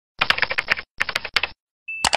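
Keyboard-typing sound effect: two quick runs of rapid key clicks, each about half a second long, as text is typed into an animated search bar. A high steady beep starts just before the end.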